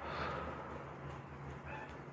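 A person's soft breath out, fading within the first half-second, then quiet room tone with a faint steady low hum.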